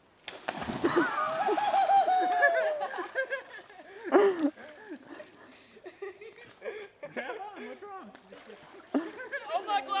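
A person dropping off a vine swing into a river with a heavy splash about half a second in, followed by a long drawn-out shout and water sloshing around him, with laughter near the end.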